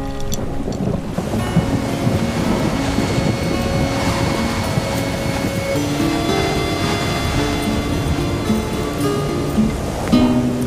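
Wind blowing steadily, with background music of long held notes playing over it.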